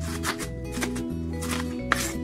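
Background music with a steady bass line, over a cleaver chopping through a cabbage on a wooden board: about four cuts, the last and sharpest near the end.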